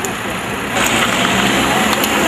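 Roadside traffic noise, vehicles running past, growing louder about three-quarters of a second in, with faint voices in the background.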